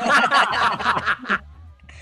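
Men laughing together, a burst of chuckling that dies away about a second and a half in.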